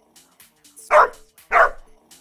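Two dog barks, about half a second apart, the second a little longer, over quiet electronic music with hi-hat ticks.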